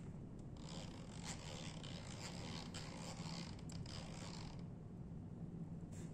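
Scratchy rubbing and handling noise lasting about four seconds, with a few faint ticks, made while the ultrasonic flaw detector's gate is being adjusted. A steady low hum runs underneath.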